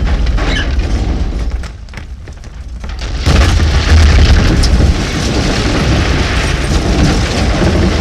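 A burning house exploding: loud fire noise, a brief lull, then a sudden deep boom about three seconds in as the building blows apart, followed by the steady noise of the blaze.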